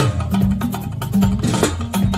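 Live church praise band playing: a bass line moving under fast drums and hand percussion.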